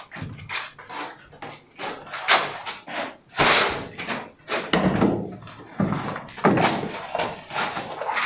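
Homemade wooden ladder being handled and set in place: irregular knocks and scrapes of wood against the wall and floor, the loudest scrape about three and a half seconds in.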